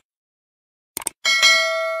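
Quick mouse-click sound effects, then a bright bell ding about a second in that rings on and fades. This is the click-and-notification-bell effect of a subscribe-button animation.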